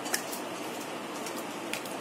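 Wooden spatula stirring thick curry gravy in a non-stick pan: a few light clicks of the spatula against the pan over a steady low hiss.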